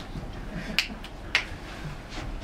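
Two sharp clicks about half a second apart, over a low steady room hum.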